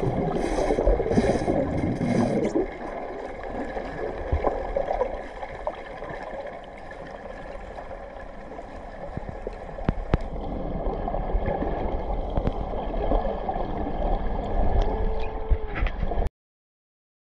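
Muffled underwater water noise, gurgling and bubbling. It is louder and more agitated with splashy bursts for the first two and a half seconds, then settles into a quieter, steadier rush with scattered clicks.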